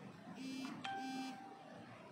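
An electronic beep: a single steady tone that starts suddenly just under a second in and holds for about a second. Short, voice-like pitched sounds come just before it and under its start.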